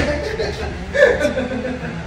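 A man chuckling, with a louder burst of laughter about a second in.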